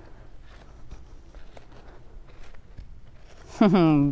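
Faint, scattered shuffling steps in soft arena sand as a horse and a person move about, with a light rustle of rope. A woman's voice begins near the end.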